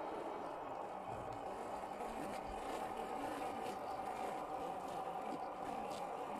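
Electric drive motor and gearbox of a 1/10-scale RC crawler (HB-ZP1008 Land Cruiser) whining steadily as the truck crawls slowly over lumpy dirt.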